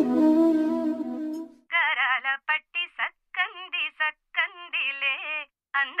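Instrumental music with sustained tones fades out in the first second and a half, then a high solo voice starts singing a Telugu song, short wavering, ornamented phrases with brief gaps and no accompaniment, sounding thin and narrow.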